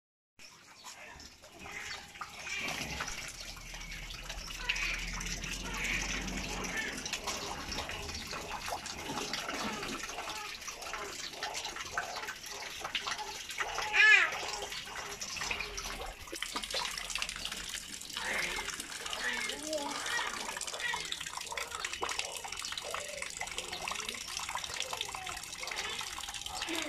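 Water splashing and pouring from a small plastic scoop at a paddling pool, with a child's wordless voice on and off. A short high-pitched squeal about halfway through is the loudest sound.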